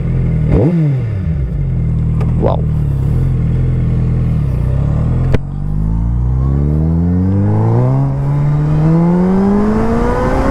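Suzuki Hayabusa Gen 3's 1340 cc inline-four engine idling steadily, with a single sharp click about five seconds in. The engine note then climbs smoothly and continuously as the motorcycle pulls away and accelerates.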